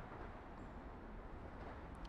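Faint, steady outdoor background noise: a low rumble and hiss with no distinct event.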